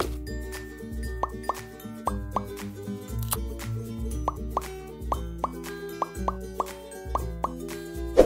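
Light, bouncy background music with a steady bass beat, dotted with many short bubbly pops that sweep upward in pitch.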